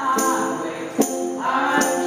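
Live acoustic performance: a woman and a man singing over a strummed acoustic guitar, with a tambourine struck about three times.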